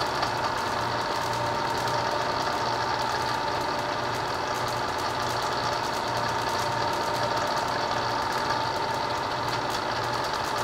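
Vertical milling machine running with its face-milling cutter spinning, as the cutter is brought down to touch off on the part. A steady whine runs over a low hum that pulses about once a second.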